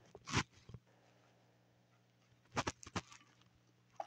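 A person drinking from a bottle: a short sip about a third of a second in, then a quick run of four or five gulps around the three-second mark.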